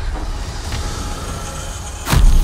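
Sci-fi film trailer sound design: a low, steady mechanical rumble, like the drone inside a derelict spaceship.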